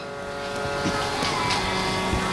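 Steady shruti drone, a held pitch with many overtones, slowly getting a little louder.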